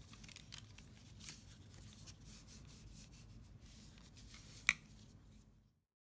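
Paper envelopes being handled, folded and rubbed flat, a faint irregular rustling with small ticks, and one sharp click about four and a half seconds in. The sound stops abruptly shortly before the end.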